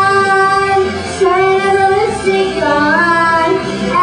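A girl singing a pop song into a microphone over musical accompaniment, holding long sustained notes, with a new rising phrase about two and a half seconds in.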